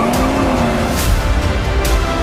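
Car engine running hard at high revs, mixed with trailer music and three sharp hits about a second apart.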